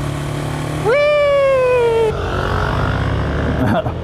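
KTM motorcycle engine running on the road with wind rushing past, and a drawn-out high vocal cry about a second in that slowly falls in pitch.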